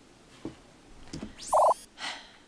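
Electronic call-ended sound effect near the end: a quick rising sweep with a short beep, marking the video call being hung up.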